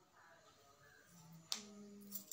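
Quiet room tone broken by one sharp click about one and a half seconds in, followed by a low, steady hum.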